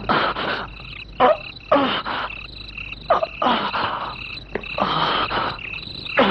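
Frogs croaking in a night ambience, a croak roughly every second, several sliding down in pitch.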